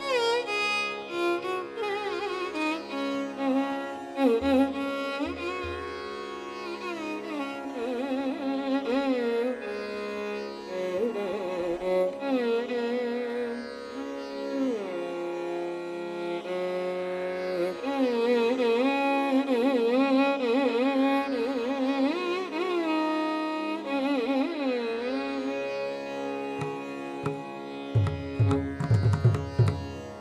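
Carnatic violin playing a solo passage of gliding, heavily ornamented notes over a steady drone. Near the end a few drum strokes from the mridangam come in.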